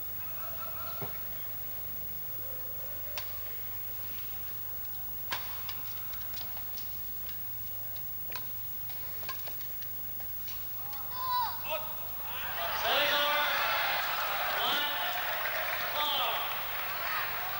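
Badminton rally in an arena: sharp cracks of rackets hitting the shuttlecock, irregular and roughly a second apart, over a low crowd murmur. About eleven seconds in, shouts rise and the crowd bursts into loud yelling as the point ends.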